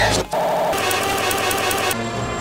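Military helicopter's engine and rotor running, with a steady whine and fast regular pulsing, after a brief burst that cuts off about a quarter second in.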